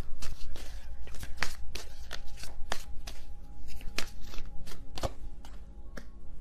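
A tarot deck being shuffled and handled, an irregular run of sharp card snaps and taps several times a second.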